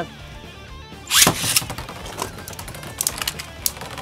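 A Beyblade Burst spinning top launched into a plastic stadium: a sudden loud rush about a second in, then a run of sharp ticks and clicks as the top spins and skitters on the stadium floor.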